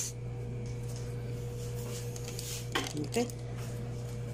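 Faint rustling and a few light taps from disposable plastic gloves and a cardboard box being handled on a glass cutting board, over a steady low electrical hum with a faint whine in it.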